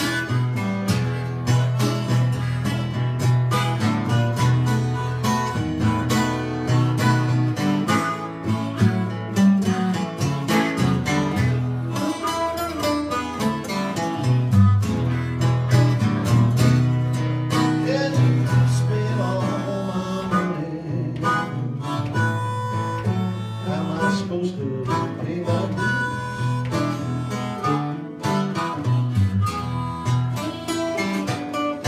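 Acoustic guitar strumming a blues, with a harmonica playing lead over it in an instrumental passage.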